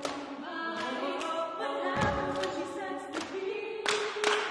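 Women's vocal ensemble singing a cappella, several treble voices holding and shifting sustained notes. A deep thump comes about halfway through, and a few sharp knocks come near the end.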